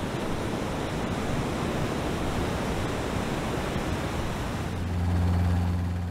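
Steady rushing wind and sea noise on a ship's open deck, buffeting the microphone. Near the end a low steady hum comes in underneath.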